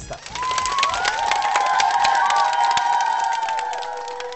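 Studio audience cheering and applauding, with many quick claps and high children's voices shouting. It builds about half a second in and fades near the end.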